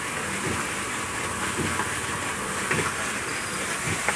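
Concrete mixer blending limestone and cement, running with a steady, even mechanical noise and a strong hiss.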